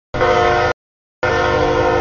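Diesel freight locomotive's air horn sounding for a grade crossing: a short blast, then a longer one starting a little over a second in, several steady tones sounding together as a chord.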